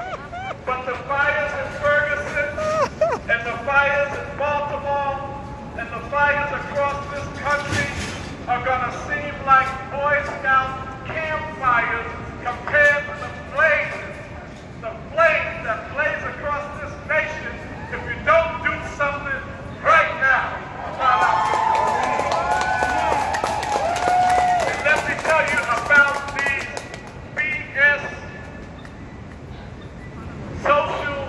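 A person's voice carrying over a crowd, the words unclear, with drawn-out, wavering notes about two-thirds of the way through.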